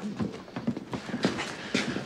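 Rapid, ragged breathing and short grunts from men in a physical struggle, one of them in pain.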